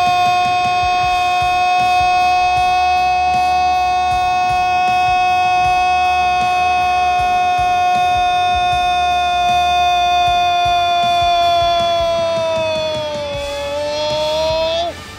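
A football commentator's long, held "goool" cry on one steady high pitch, lasting about thirteen seconds. The pitch sags near the end.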